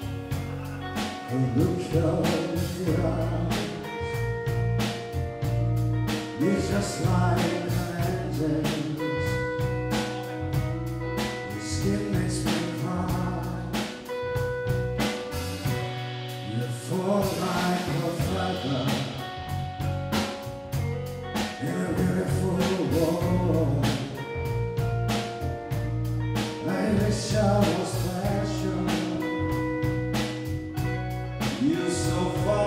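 Live band playing a song: a man singing over guitars, bass and drums, with a steady beat.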